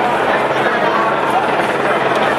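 Dense babble of a marching crowd talking, over a steady low rumble.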